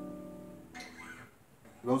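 A D7 chord on an acoustic guitar, strummed just before, rings and fades, then is damped short about three-quarters of a second in.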